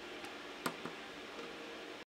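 Lunéville embroidery hook pricking in and out of taut fabric: three faint ticks, the loudest about two-thirds of a second in, over a steady low hiss.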